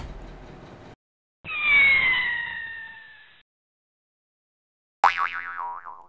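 A light click as a speedcube is set down on a mat. Then come two electronic outro sound effects: a falling tone lasting about two seconds, and from about five seconds in, a warbling jingle that wobbles up and down in pitch.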